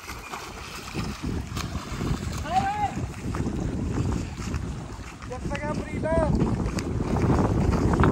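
Wind buffeting the microphone over the splashing of people swimming in a canal, with a voice calling out briefly twice, a few seconds apart.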